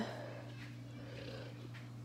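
Domestic tabby cat close to the microphone, making a faint soft sound that fades away in the first second and a half, over a steady low hum.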